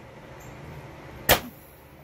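Goodnature A24 CO2-powered rat trap firing once, about a second in, as its trigger is poked with a stick: a single sharp pneumatic snap with a short tail. The trap trips, showing it is charged and working.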